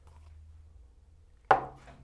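Dice thrown from a dice cup onto a backgammon board: one sharp clatter about one and a half seconds in, dying away quickly.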